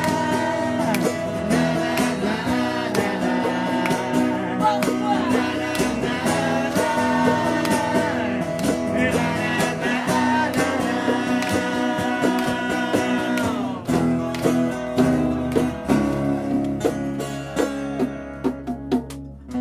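Live acoustic band playing an up-tempo rock-and-roll song: a sung lead vocal over strummed acoustic guitars and a steady percussion beat. About fourteen seconds in, the steady playing breaks into a run of separate accented hits.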